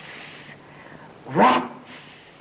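A short voiced cry about one and a half seconds in, rising in pitch and then breaking off, over a faint steady hiss.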